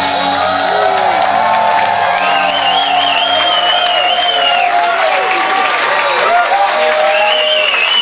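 A live punk rock band's final chord ringing out, with wavering held guitar tones, while the club crowd cheers and whoops. The low notes fade away over the first few seconds.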